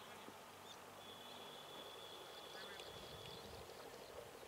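Faint bird calls over quiet open-air ambience: a thin high note held for about two seconds, then a brief run of chirps.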